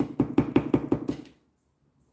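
A plastic bottle of red acrylic craft paint handled at the palette, with a quick run of small knocks, about ten a second, that stops after about a second and a half.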